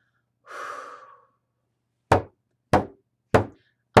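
A breath, then three evenly spaced strokes on a bodhrán about two-thirds of a second apart, each with a short low ring, setting the beat before the song restarts.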